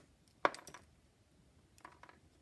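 Small metal parts and wire ends clicking and clinking as they are handled on a workbench. One sharp click comes about half a second in, followed by a few lighter ones, and another comes near the end.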